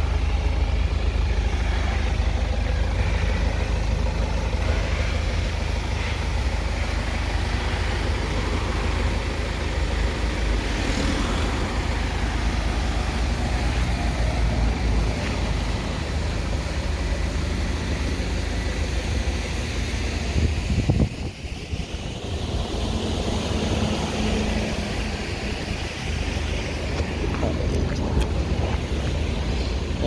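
Steady road traffic noise from a nearby street, a constant low rumble with a broad hiss over it, briefly dropping away about two-thirds of the way through.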